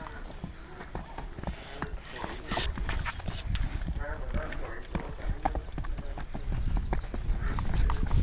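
Horse's hooves clopping irregularly on a dry dirt track as it steps along under a rider. A low rumble grows louder near the end.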